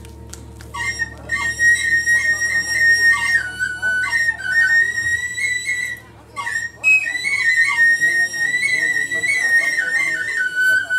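Balinese bamboo suling flutes playing a high, sustained melody that steps down in pitch now and then, over gamelan percussion strokes. The flute line comes in about a second in and breaks off briefly about six seconds in.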